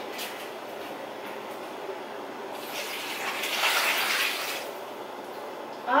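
Water poured from a bowl into a soup pot, a rushing splash that swells about halfway through and lasts about two seconds.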